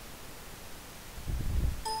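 Windows error chime: a short ringing tone as Photoshop rejects a paint bucket click because no layer is selected. A low thump comes just before it.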